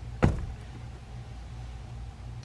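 A single sharp thump about a quarter second in, from handling the plastic action figures as they are pulled away, over a steady low hum.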